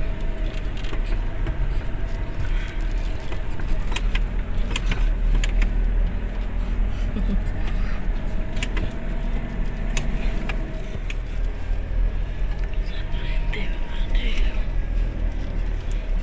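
A four-wheel-drive vehicle driving along a bumpy dirt track, heard from inside the cab: a steady low engine and road rumble with frequent rattles and knocks as it goes over the ruts.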